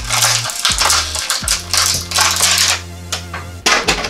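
Thin clear plastic bag crinkling in repeated bursts as a plastic toy is pulled out of it. Background music with a low bass line plays underneath.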